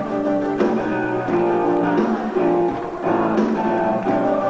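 Live rock band playing with guitar, keyboards and drums, the chords changing every half second or so.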